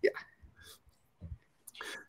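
A short spoken "yeah", then a pause holding only faint breaths and small mouth sounds before talk resumes.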